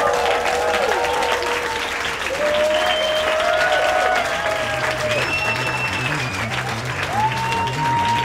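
Audience applauding and cheering, with long whoops held over the clapping. A low pulsing beat of music comes in underneath about halfway through.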